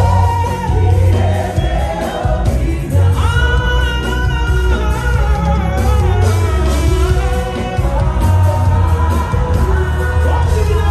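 A woman singing a gospel song live into a microphone over a band with a heavy, steady bass.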